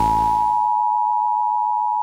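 Steady single-pitched test tone of the kind that goes with a TV test pattern, held at an even pitch and level. A low whooshing swell fades out under it within the first second.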